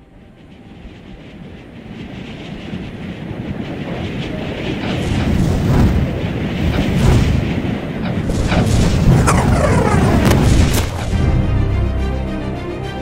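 Cinematic transition sound design: a rumbling whoosh swelling steadily louder over several seconds, with sharp hits and falling sweeps near the peak. It cuts off suddenly about a second before the end, giving way to music.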